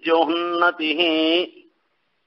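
A man chanting a Sanskrit verse in melodic recitation, drawing out two long phrases on held notes, then pausing about a second and a half in.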